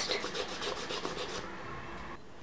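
A wad of cotton rubbed back and forth in quick repeated strokes over a chalkboard-painted surface, wiping off excess chalk dust.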